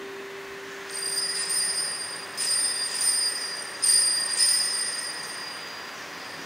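Altar bells rung at the elevation of the chalice, signalling the consecration. They ring out high and clear from about a second in, are struck again about two and a half and four seconds in, and die away near the end.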